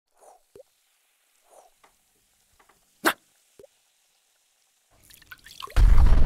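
Cartoon sound effects of liquid dripping and plopping in scattered single drops, with one sharp click about three seconds in. Near the end a fizz builds and breaks into a loud, deep explosion.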